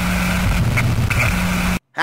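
A loud vehicle engine sound with a steady low hum over a noisy rumble, cut off abruptly near the end.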